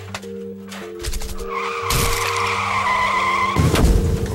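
Car tyres screeching in a long skid, then a loud crash near the end as the car hits a post: an animation sound effect over background music.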